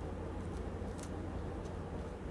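A green orange being peeled by hand, the peel giving a few faint, brief ticks as it is pulled apart, over a steady low hum.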